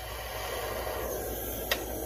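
Small jeweler's soldering torch flame hissing steadily while heating tiny sterling silver half-round balls, with one sharp click near the end.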